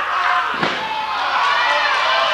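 A wrestler's body hitting the floor outside the ring: one hard thud a little over half a second in, over a crowd shouting and cheering.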